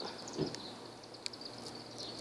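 Quiet background with a steady high insect trill, a soft bump about half a second in and a faint tick past the middle.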